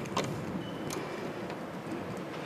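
Faint room noise with a couple of small clicks from handling a USB cable as it is plugged into a small microcontroller board.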